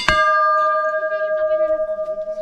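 Large brass temple bell struck once: a sharp strike, then a long ringing tone with several overtones that slowly fades.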